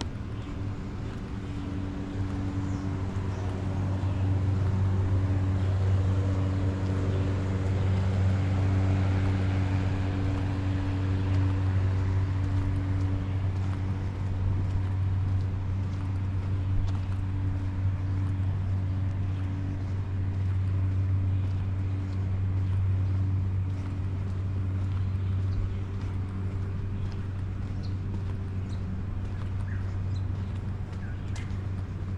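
A steady low mechanical hum of a motor running at a constant speed, swelling a little in the first half.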